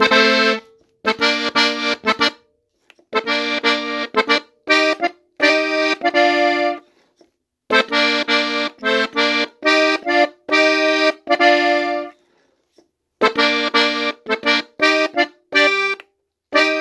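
A three-row diatonic button accordion tuned in F, on its master register, playing a melody in B-flat. It plays in short phrases of notes and chords with brief pauses between them.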